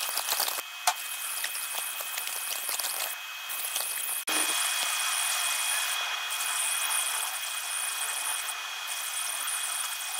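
JPT fiber laser engraving and cutting brass: a steady, crackling high hiss with a thin constant whine from the machine underneath, broken by brief pauses between passes. The sound cuts off abruptly about four seconds in and resumes as a smoother hiss.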